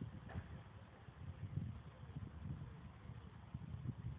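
Faint outdoor background: a low, uneven rumble with no distinct event.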